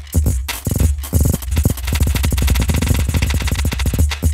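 Alchemy software synth playing a percussive sample through its granular engine with several taps: a clattery stream of rapidly retriggered sample fragments over recurring low thumps, the repeats bunching into a fast stutter about halfway through.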